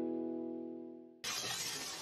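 A held musical chord fades out, then about a second in a sudden burst of noise cuts in and slowly tails off: an editing transition sound effect over the wipe between scenes.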